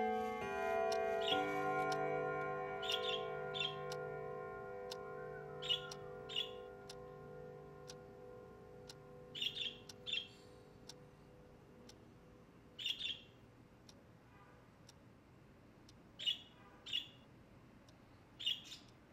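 Wall clock chiming: several bell-like notes ring on together and slowly fade over the first half, with faint ticking. Budgerigars give short chirps, often in pairs, about a dozen times throughout.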